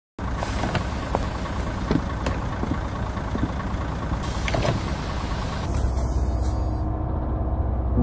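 City bus idling at a stop with a steady low engine rumble. About four seconds in, a burst of air hiss lasts a second and a half as its pneumatic doors open.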